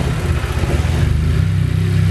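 A 10th-generation Honda Civic Si's turbocharged 1.5-litre four-cylinder engine idling with a steady, even low hum.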